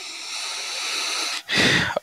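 Steady hiss of noise on a video-call audio line, growing slightly louder, then a brief louder burst near the end.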